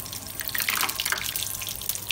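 Chicken shami kababs shallow-frying in hot oil in a pan: a dense, steady crackle and sputter of bubbling oil.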